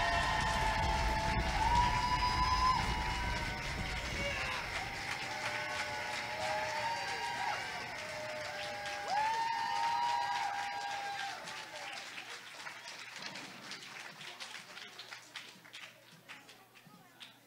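Audience applauding and cheering with scattered whoops and shouts after a drum number ends, the clapping dying away over about twelve seconds.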